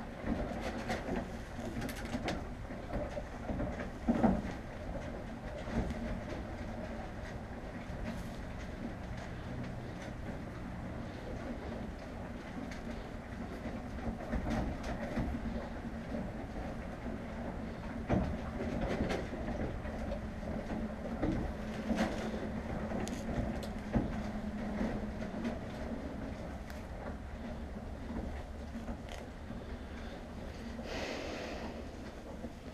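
A horse eating hay in a stall while gloved hands pick through its tail: steady rustling and crunching, with a few louder knocks.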